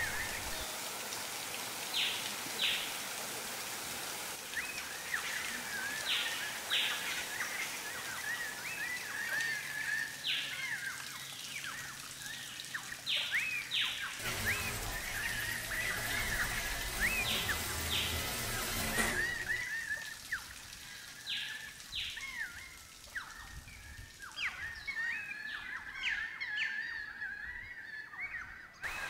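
Birds calling: a steady chatter of short chirps with a sharp two-note call repeating about every four seconds. From about the middle a rushing noise rises for several seconds, then falls away.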